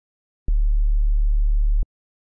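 One held sub-bass note from the Serum synth, a pure sine tone, starting about half a second in and cut off just before the end, with a small click at its start and stop. Oscillator A's phase is set near 90 degrees, so its sine adds to the sub oscillator instead of cancelling it.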